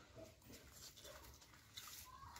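Faint close-miked chewing and wet mouth sounds of a person eating a hand-fed mouthful of rice and curry, with a few small clicks.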